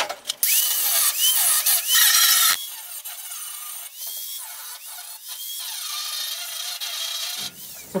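Angle grinder grinding welds and slag off steel floor plates, its motor pitch repeatedly dipping and recovering as the disc bears on the metal. The grinding is loud for the first two and a half seconds, then quieter for the rest.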